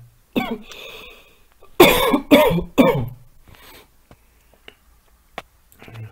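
A man coughing: one cough just under half a second in, then a louder run of three coughs around two seconds in, followed by a few faint clicks.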